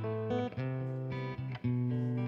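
Acoustic guitar playing a slow passage of plucked chords, a new chord every half second or so, each left to ring.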